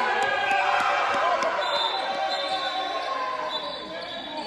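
Indoor basketball game sounds: a basketball bouncing on the wooden court while players' and spectators' voices carry through the sports hall. The overall noise eases off gradually.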